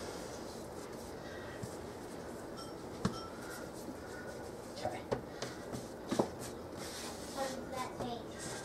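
Light hand-handling sounds at a kitchen countertop over a steady low room hiss, with one sharp click about three seconds in.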